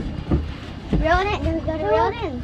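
Excited, high-pitched shouting and laughter, children's voices among them, mostly from about a second in.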